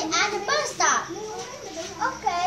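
Children's voices talking.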